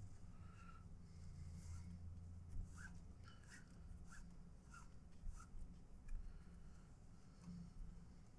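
Faint rustling and rubbing of nylon paracord being pulled through a bracelet weave by hand, with a few soft scratchy sounds, over a low steady hum.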